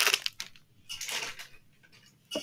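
Short rustles and scrapes of a small cardboard toy box and its packaging being handled: one right at the start and another about a second in, with near quiet between.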